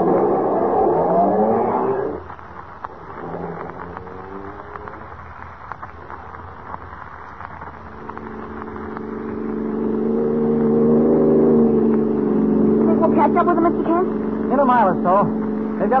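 Radio-drama sound effect of a car engine pulling away, then running steadily at speed and growing louder over the second half. A man's voice comes in near the end.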